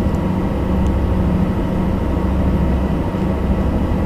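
A ferry's engine running with a steady low drone, with a rushing noise over it.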